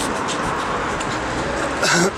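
Steady city street traffic noise from passing cars, with faint voices of passers-by; a louder voice cuts in at the very end.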